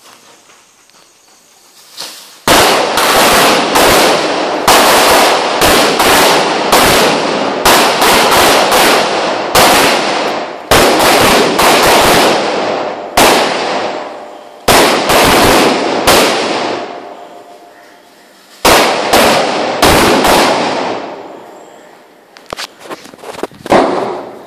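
A string of firecrackers going off: loud, rapid, crackling bangs start a couple of seconds in and run for nearly twenty seconds, with a couple of brief lulls, ending in a few scattered pops.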